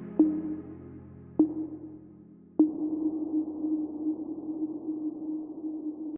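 Background music: a fading ambient chord, then three sonar-like pings about a second apart, each ringing on in a low hum. The last hum is held and cuts off suddenly at the end.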